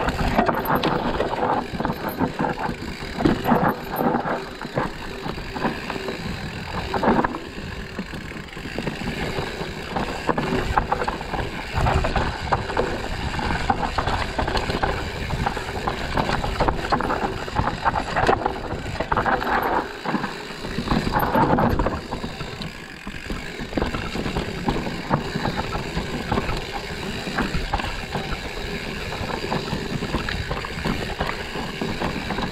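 Mountain bike riding a dirt singletrack: tyre noise on the dirt with frequent knocks and rattles from the bike over roots and bumps, rising and falling with the terrain.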